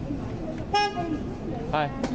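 A single short toot of a car horn, one steady pitch, a little under a second in, over the steady murmur of street traffic.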